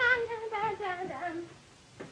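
A high voice singing a wordless, wavering phrase that trails off about a second and a half in.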